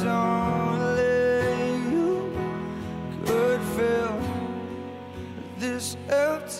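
A live acoustic pop ballad: an acoustic guitar plays steadily under a male voice singing sustained, wavering notes, strongest about a second in and again around three to four seconds.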